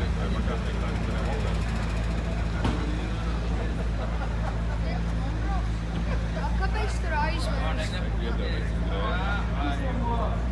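McLaren sports car's twin-turbo V8 idling steadily, with people's voices chattering around it, the chatter growing in the last few seconds.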